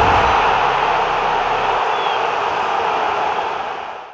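Outro logo sound effect: a loud, steady hiss of static-like noise, with a low rumble beneath it that stops about two seconds in. The hiss fades out near the end.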